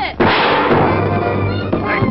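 Cartoon sound effect: a quick falling whistle ending in a sudden loud bang that dies away over about a second, with the music score continuing underneath.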